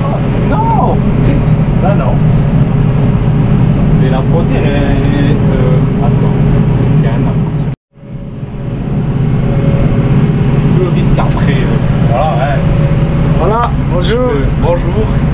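Valtra tractor's diesel engine working steadily under load while mowing with a front-mounted mower, heard from inside the cab as a loud, even drone. About eight seconds in the sound cuts out abruptly and builds back up over a second or so. A voice speaks briefly over it near the start and again near the end.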